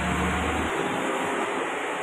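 Steady rushing background noise with a low rumble that drops away under a second in.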